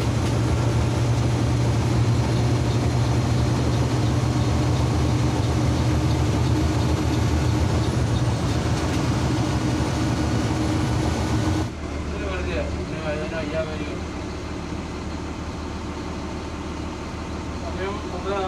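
Bharat Benz sleeper coach driving, heard from the driver's cabin: a steady low engine and road hum. About two-thirds of the way through it drops abruptly to a quieter cabin sound with faint voices.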